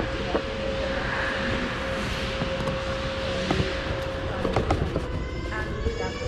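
Steady hum over a noisy indoor hall background, with a few light clicks and rustles of a cardboard pastry box being handled.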